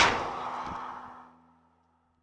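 A single whoosh that peaks right at the start and fades away over about a second and a half, the kind of swoosh used as an outro or logo sound effect.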